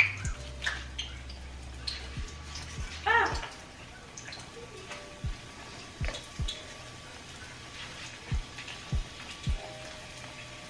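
Cannoli shells deep-frying in hot vegetable oil in a stainless pan, the oil bubbling and sizzling steadily, with light background music.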